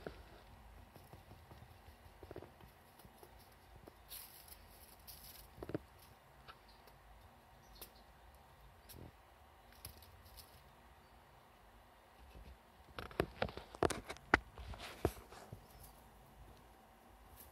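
A pet squirrel scrabbling about and handling hazelnuts: scattered faint clicks and scratches, a brief rustle about four seconds in, and a quick flurry of sharp clicks and scratching near the end.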